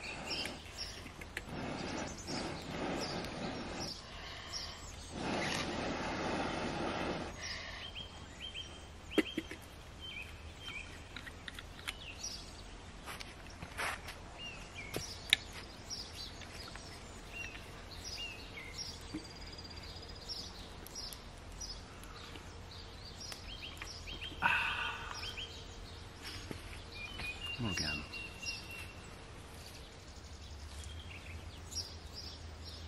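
Outdoor woodland ambience with small songbirds chirping and whistling on and off. Two stretches of rustling noise come early, and two sharp clicks fall in the middle.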